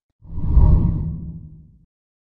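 A whoosh transition sound effect: one deep swell that rises a quarter second in, peaks about half a second in, and fades away before the end.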